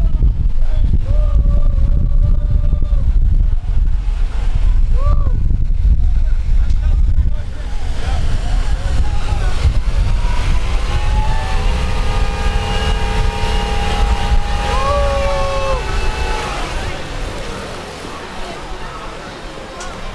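Wind buffeting the microphone in a heavy low rumble for about the first seven seconds, with a few short voice calls over it. Then the rumble drops away, leaving a few steady tones and voices that fade out toward the end.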